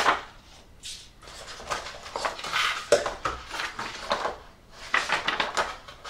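Paper instruction sheets rustling and crinkling as hands handle them inside a cardboard kit box, with a few sharper knocks about a second, three seconds and five seconds in.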